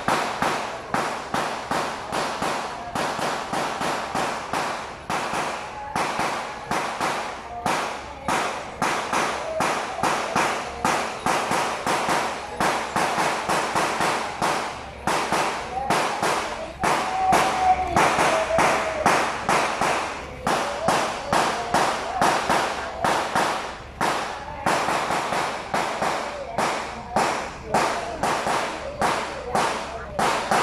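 Strings of firecrackers going off: rapid, uneven sharp cracks that run on without a break, over a background of crowd voices.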